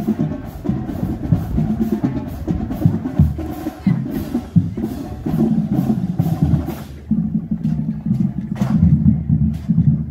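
Marching band drumline playing a rhythmic cadence on drums and cymbals. About seven seconds in the cymbal strokes drop out and the drumming thins, with voices mixing in.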